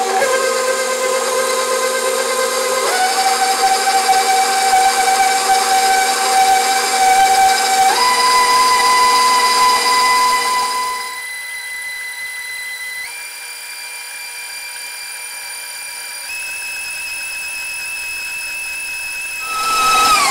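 Stand mixer motor running with its wire whisk beating cream cheese and powdered sugar. The whine steps up in pitch several times as the speed is raised, then winds down with a falling pitch at the end as the mixer is switched off.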